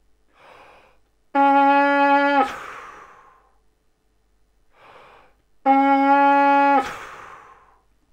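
Trumpet mouthpiece in a detached leadpipe played twice: each time an audible breath in, then one steady held note about a second long that stops cleanly, with a short echo of the room after it.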